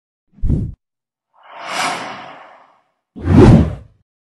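Sound effects for an animated subscribe-button intro: a short low hit about half a second in, a swelling whoosh that fades over about a second, then the loudest, a deep hit near the end.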